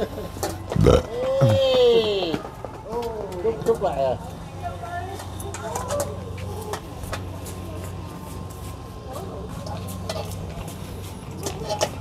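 Men laughing loudly about a second in, then quieter background voices over a low steady hum.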